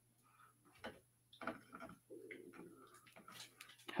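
Faint, irregular clicks and gnawing from a dog chewing on a chair, with a brief soft low sound about two seconds in.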